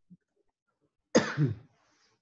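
A man clearing his throat once: a short, harsh burst about a second in.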